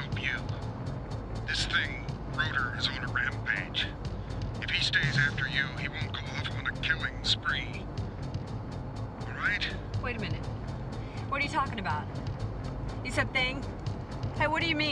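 Film soundtrack mix: music with a fast, even tick, a voice in short scattered bits, and a steady low car-engine hum underneath.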